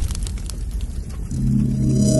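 Logo-intro sound design: a fiery rumble with scattered crackles, dying down after a burst. About two-thirds of the way in, a sustained, chord-like synthetic tone enters as the logo settles.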